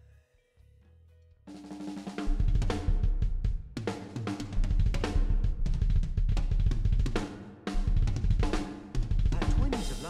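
After about a second and a half of near quiet, a rock drum part comes in loud on an acoustic drum kit with Zildjian cymbals: heavy bass drum, snare and cymbal crashes. The song's recorded guitar and bass play under it.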